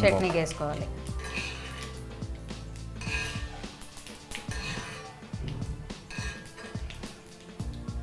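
A metal spoon clinking and scraping against a small kadai while a tempering of chillies and cumin in oil is stirred, a run of short irregular clicks, over steady background music.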